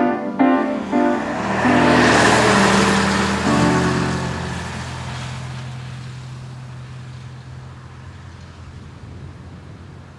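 Grand piano playing short repeated notes, then a low chord struck about three and a half seconds in and left ringing, slowly fading away. A rushing noise swells and fades over the first few seconds.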